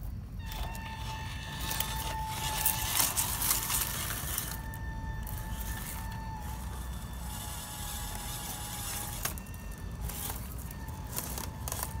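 WPL C24 RC crawler truck driving over rocks: its small electric motor and gearbox give a steady high whine that cuts out and comes back with the throttle, with scattered clicks and crackle from the tyres on stone.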